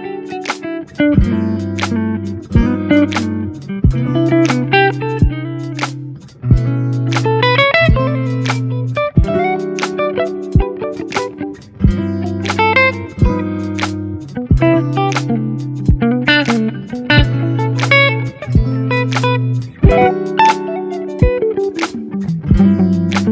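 Telecaster-style electric guitar played through an Oxygen One preamp into a Kemper profiler: rhythm chords with held low notes and quick single-note fills, each note with a sharp pick attack. Near the end the tone switches to the Kemper alone for comparison.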